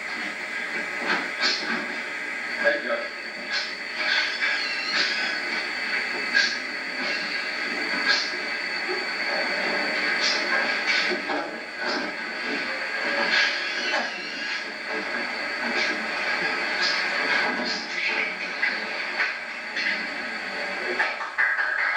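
Hissy, muffled old videotape sound of a room with indistinct voices, broken by scattered sharp clicks and knocks every second or two.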